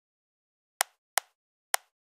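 A computer mouse clicking three times, short sharp clicks a little under half a second apart.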